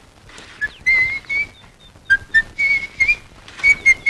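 A person whistling a string of short notes in several brief phrases, each note breathy.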